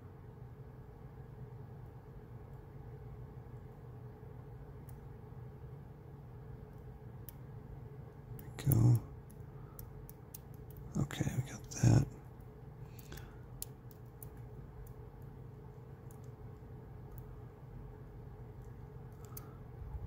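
Faint, scattered clicks of a dimple pick working the pins inside a brass Abus EC75 dimple padlock, over a steady low hum. A few brief wordless vocal sounds come about halfway through.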